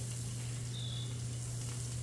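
Ground beef and pork mini meatloaf patties sizzling steadily on a hot Blackstone flat-top griddle, over a steady low hum.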